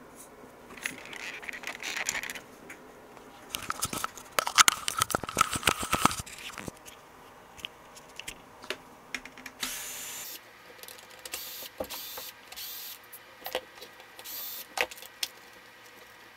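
Parts inside a Brother WP-95 word processor being handled and pulled apart: irregular clicks, rattles and scraping of plastic and metal. A dense clatter comes a few seconds in, then scattered clicks and short hissy scrapes.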